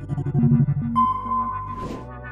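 Short electronic logo jingle: three brief low synth notes, then a held higher tone, ending in a quick swish.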